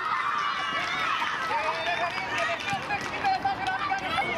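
Several high-pitched young voices shouting and calling out at once on a football pitch, overlapping with a general hubbub of players and onlookers.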